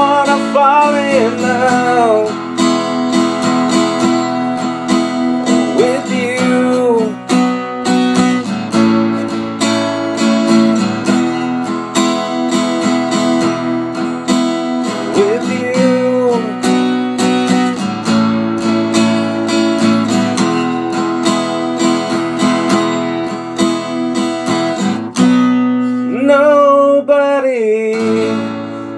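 Acoustic guitar strummed in a slow, steady chord pattern, with sustained ringing chords and a few sliding notes.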